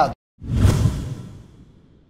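Whoosh sound effect for an animated title-card transition: after a brief silence it swells quickly about half a second in, deep and heavy in the low end, then fades away over about a second and a half.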